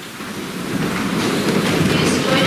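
Congregation sitting down in pews after standing for prayers: a dense rumble of shuffling and rustling that swells through the moment, carried by the church's large room.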